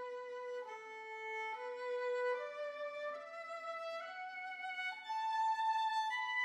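Solo violin playing a slow melody of long held notes: it dips a step and returns, then climbs note by note to a higher held note near the end.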